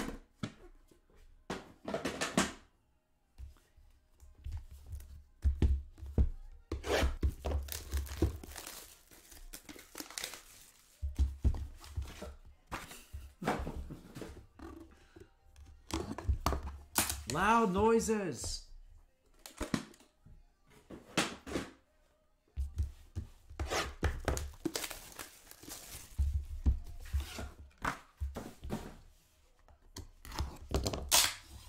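Cardboard trading-card boxes being handled and opened: irregular tearing, scraping and rustling of cardboard, with dull knocks and low thuds as the boxes are set down and moved close to the microphone.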